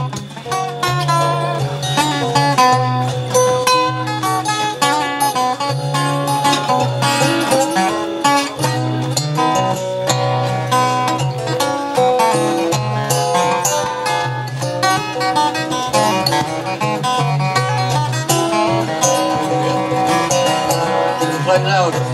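Acoustic guitars playing a tune together: a busy run of picked notes over steady low bass notes.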